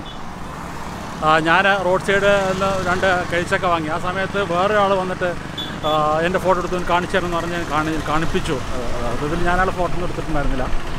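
A man talking over steady road traffic noise, with vehicles passing on a nearby road.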